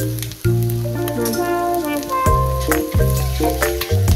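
Eggs sizzling and crackling as they fry in a nonstick frying pan, under background music with a steady bass line.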